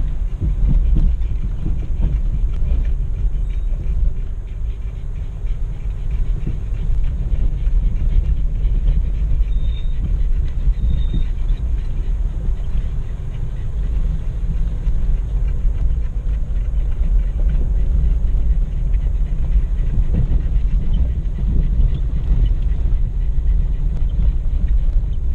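Jeep ZJ Grand Cherokee heard from inside the cabin as it crawls over a rough dirt and gravel trail: a steady low rumble of engine and tyres with small jolts from the bumps.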